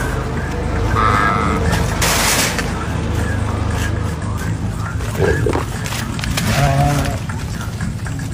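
Sheep bleating in a pen, a few short calls in the second half, over a steady low rumble, with a brief rushing noise about two seconds in.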